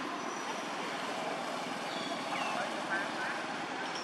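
Steady outdoor background noise with a few faint, short high chirps scattered through it.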